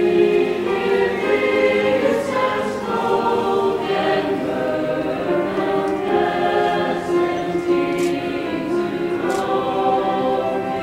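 School chorus singing held notes in harmony, with a few crisp consonants near the end.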